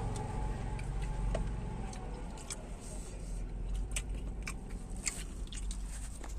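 Truck cab noise on the move: the engine's steady low drone, with scattered light clicks and rattles over it.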